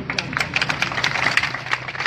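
Crowd clapping: many quick, overlapping hand claps.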